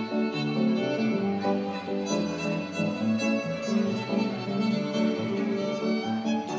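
Live instrumental music: a fiddle playing a flowing melody over piano accompaniment, with the notes running on without a break.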